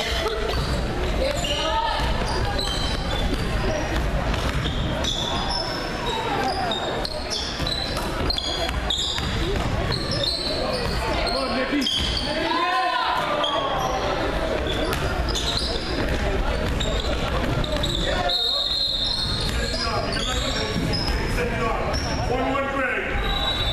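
A basketball being dribbled on a hardwood gym floor during a game, among players' and spectators' shouts, with the sound echoing in the large hall.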